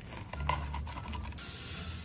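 Kitchen knife cutting through a crisp, toasted tortilla wrap: a run of small crunching crackles, then a short scratchy hiss near the end.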